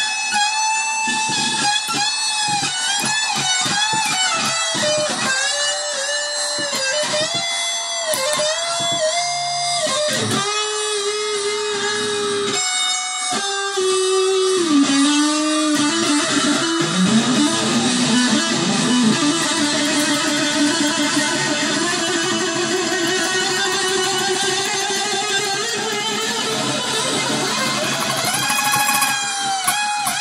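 Jazzmaster-style offset electric guitar played through an amplifier. For about the first ten seconds it plays quick repeated picked notes with bends, then it holds notes that slide down in pitch, then a long wavering note rings out until near the end.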